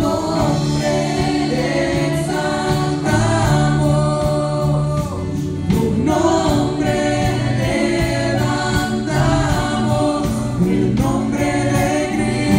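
Live Spanish-language worship song: women singing lead into microphones over a band of electric guitars, drums and keyboard, playing continuously.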